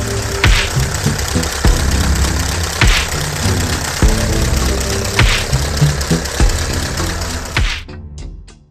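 A V8 diesel engine running steadily, most likely the Hino EV750T twin-turbo, with background music that has a regular beat playing over it.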